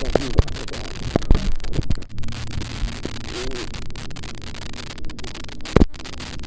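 Steady wind rumble and hiss on the camera microphone, broken by several sharp knocks from the camera being handled while a small fish is landed.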